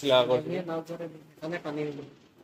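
A man's voice speaking in short bursts, words not made out, with some room echo.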